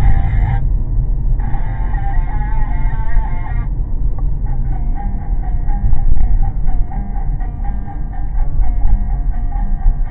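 Guitar music playing on a car radio, with the steady low rumble of the moving car underneath. The music thins out briefly twice, about a second in and again about four seconds in.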